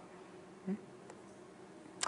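Faint room tone with a low, steady hum, and one brief soft low sound about three-quarters of a second in.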